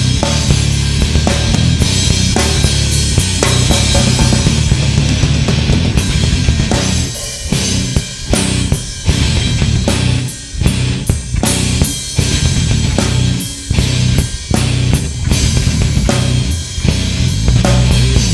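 Live rock band playing an instrumental passage on electric guitar, bass guitar and drum kit. About seven seconds in, the playing turns into stop-start accented hits with short breaks between them.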